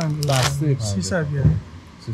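A man talking, with the crinkle of a plastic snack bag of pistachios being lifted and handled.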